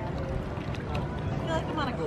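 Faint voices over a steady low rumble, with a voice becoming clearer near the end.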